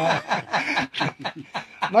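A man chuckling, a run of short laughs into a close microphone.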